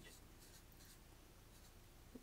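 Faint scratching strokes of a felt-tip marker writing on thin non-woven agrofibre.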